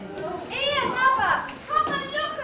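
High-pitched voices speaking in short phrases.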